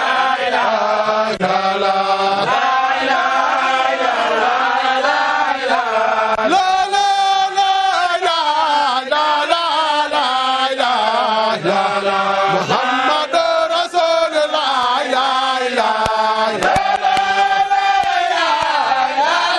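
A crowd of Sufi disciples chanting a devotional chant together, loud and unbroken, in a rising and falling melody with long held notes.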